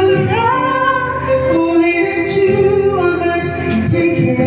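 A woman singing karaoke through a handheld microphone over a backing track, holding long notes that slide between pitches.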